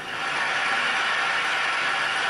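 Audience applause from a played-back talk video heard through room loudspeakers, a steady wash of clapping that swells up and then fades out.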